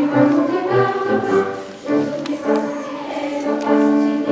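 Girls' treble choir singing held notes in parts, with piano accompaniment underneath. The phrase breaks briefly just before two seconds in, then the singing resumes.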